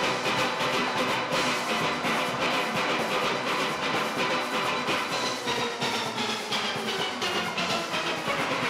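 A full steel orchestra playing: many steelpans struck together in fast, dense strokes, ringing in many notes at once.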